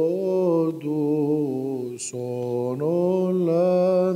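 Male voice chanting a slow, melismatic Byzantine hymn in Arabic: long held notes that step slowly up and down in pitch. There are short breaks for breath or a consonant about a second in and again around two seconds in.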